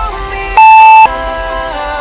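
Workout interval timer's long, higher beep, about half a second, sounding about half a second in to mark the end of the set, following two short countdown beeps, over pop background music.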